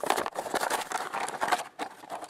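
Clear plastic blister bubble crinkling and crackling as it is pulled off the cardboard backing card of a toy package, a rapid run of small crackles.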